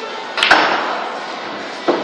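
Pool shot on a sinuca table: a sharp double clack about half a second in as the cue strikes the cue ball and the balls collide, then a smaller knock of a ball near the end.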